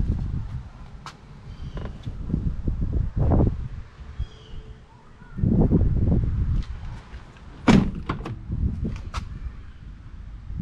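Handling noise from a handheld camera being moved around the open cabin: irregular low rumbling bumps, with a few sharp clicks and knocks, the loudest click about three-quarters of the way in.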